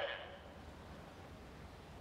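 Faint, steady low hiss and rumble, with the echo of a voice dying away in the first half-second.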